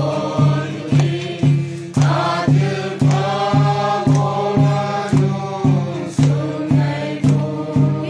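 A small group of voices singing a hymn together, with a drum keeping a steady beat of about three strokes a second.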